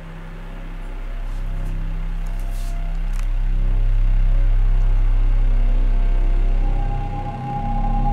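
Background film score: a low sustained drone that slowly swells and then eases off, with a higher held note coming in near the end.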